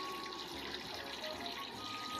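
Steady, even rushing background noise, like running water, with no distinct events.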